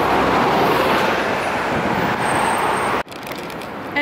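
Loud, steady city street traffic noise mixed with wind buffeting the microphone. It cuts off suddenly about three seconds in, leaving quieter street sound.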